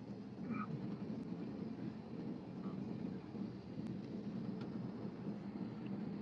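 Faint, steady low hum and hiss of an open line on a live audio chat, with no clear events in it.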